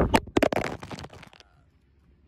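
A smartphone being fumbled in the hand and caught. A quick run of knocks and rubbing lands right on the phone's own microphone for about a second and a half.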